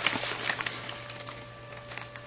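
A few short clicks and a rustle in the first half-second, as a hand comes away from the receiver, then a few faint ticks over a steady electrical hum.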